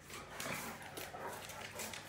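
Great Dane stomping her front paws on a stone tile floor, a handful of sharp clicks and taps from paws and nails, her signal that she wants to play.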